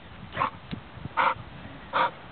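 A pit bull making three short breathy sounds, less than a second apart, while it mouths at a hand and a rope toy in play.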